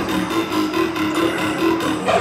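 Dubstep from a live DJ set over a large concert sound system, in a breakdown: the deep bass is gone and a repeating mid-pitched synth note pulses on its own.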